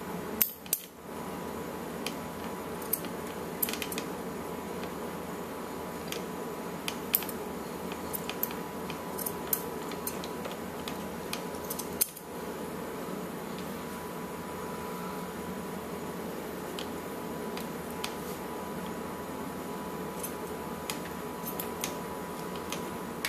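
Scissors snipping through a toy's plush fur: scattered short, sharp clicks of the blades, a few seconds apart, over a steady background hum.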